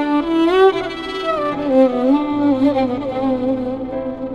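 Violin playing a slow melody in its low register, sliding between notes, over long sustained low accompaniment notes.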